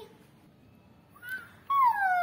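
A girl's yawn: after a second of quiet and a brief faint voiced note, a loud drawn-out vocal sound begins about one and a half seconds in, starting high and sliding steadily down in pitch.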